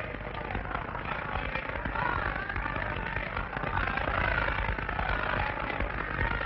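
Crowd hubbub: many voices talking over one another on top of a continuous low rumble, heard through a hissy, narrow early sound-film track.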